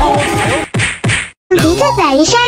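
About four sharp whacks, hands striking a person's back, in quick succession over background music. The sound breaks off suddenly about a second and a half in.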